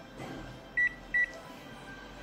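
Two short high beeps, a little under half a second apart, from a photocopier's touchscreen control panel as its on-screen keys are pressed.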